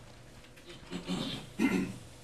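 A faint human voice away from the microphone, heard in two short utterances about a second in and near the end.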